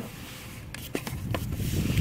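A few light clicks and scrapes as a metal C-clip is slid onto the front splitter's plastic adapter by hand, with a low rumble building in the second half.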